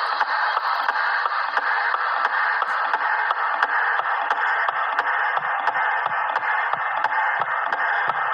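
Steady, radio-like static hiss with a fast, even ticking beat running under it, as in a lo-fi background soundtrack.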